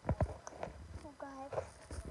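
Handling knocks and rubbing from a handheld phone being moved around close to the microphone, with a short voiced sound from a young girl a little after a second in.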